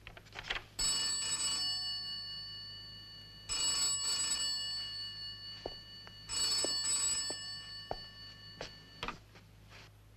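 Wall-mounted telephone bell ringing three times, about every three seconds, each ring fading away before the next, with a few light knocks in the pauses.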